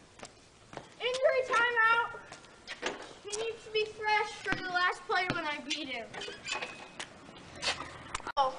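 Boys' voices calling out in high, raised tones for several seconds, broken by a few sharp knocks.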